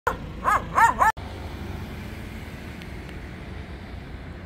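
A dog barks four times in quick succession, each bark rising and falling in pitch. Just after a second in, the sound cuts off abruptly and gives way to a steady low rumble of street noise.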